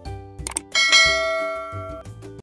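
A bright notification-bell chime sound effect rings about three-quarters of a second in and fades over about a second, over background music with a steady beat.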